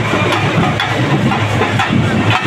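A car engine idling close by, a steady low running sound.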